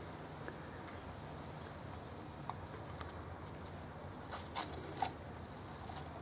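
Faint rustling and a few small ticks over a low steady hum, with two slightly louder rustles about four and a half and five seconds in.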